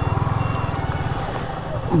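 Motorcycle engine running at low revs with an even, steady pulsing beat as the bike rolls slowly to a stop.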